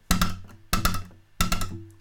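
Acoustic guitar played percussively: a tensed hand bounces on the strings so they snap against the last fret and pickup, giving a rapid tripled hi-hat-like click. It comes three times, about two-thirds of a second apart, each cluster of clicks followed by a short low ring from the guitar body.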